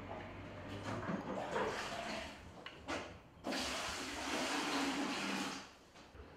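Water splashing and running, in short irregular bursts and then a steady rush of about two seconds near the end that stops suddenly.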